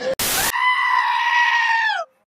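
A brief burst of TV-style static hiss, then a goat's single long, high-pitched bleat, held steady for about a second and a half and dropping in pitch as it ends.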